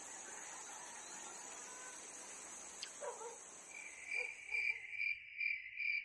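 Faint outdoor insect ambience: a steady high-pitched insect drone that fades out near the end, while from about four seconds in crickets chirp in regular pulses, roughly two a second.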